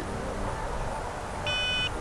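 iOptron Go2Nova telescope-mount hand controller giving one short electronic beep about one and a half seconds in as the Sun is selected, over a low background rumble.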